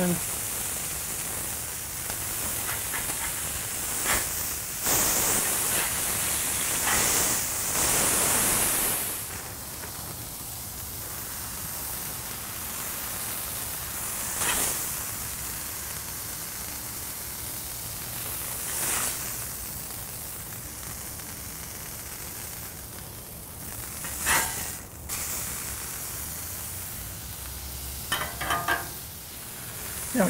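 Beef burger patties sizzling on a hot flat-top steel griddle, a steady hiss that is louder for the first several seconds. A metal spatula makes short scrapes and taps on the griddle every few seconds as the patties are worked and flipped.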